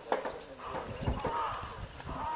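Blue wildebeest grunting as the herd walks: short calls, each arching up and down in pitch, begin about a second in. A sharp knock comes just after the start.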